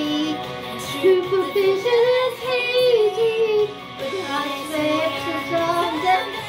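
A song: a high voice singing a slow, sustained melody with vibrato over instrumental backing.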